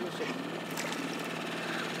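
Small outboard motor running steadily at low trolling speed, with faint voices over it.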